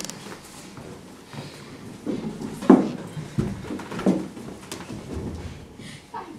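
People shuffling into place in a room, with a couple of short wordless voice sounds about three and four seconds in.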